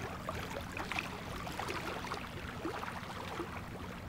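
Gentle water ambience, a steady wash dotted with small splashes and drips, over a faint low hum.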